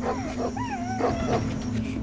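A dog whining: a few short, high calls that bend up and down in pitch in the first second and a half, over background music.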